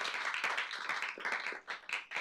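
An audience clapping, a quick run of many hand claps that thins out and dies away near the end.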